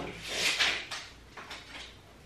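A shelf board being slid and settled onto wall-mounted shelf brackets: a short scraping rush about half a second in, followed by a few light knocks.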